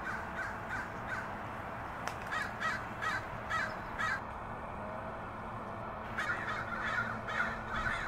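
Crows cawing in two runs of quick repeated caws, the first about two seconds in and the second about six seconds in, over a steady background hum.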